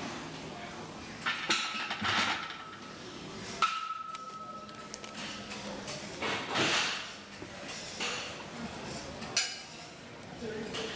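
Metal clanks and clinks of barbell weight plates, a handful of separate strikes, one about three and a half seconds in ringing on for over a second, with indistinct voices in the background.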